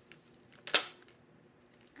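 A deck of tarot cards snapping once, sharply, about three-quarters of a second in, as cards spring out of the deck during shuffling. More than one card jumps out when only one was wanted.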